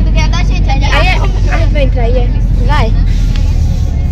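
A van's engine and road noise heard from inside the cabin while it drives, a steady low rumble, with passengers' voices chattering over it.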